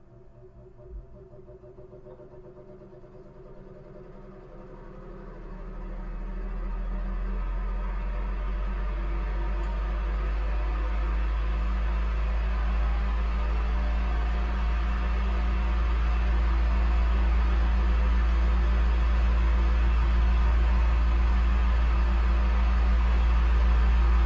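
A low steady drone with a few faint held tones above it. It swells up sharply about four to seven seconds in and then keeps building slowly. There is a single faint thump about a second in.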